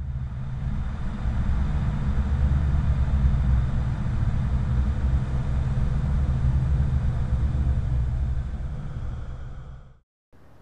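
A deep, steady rumble that swells over the first few seconds, fades away near the end, then cuts off sharply.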